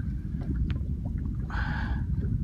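Steady low rumble of wind and water around a small boat at sea, with a short hiss about one and a half seconds in.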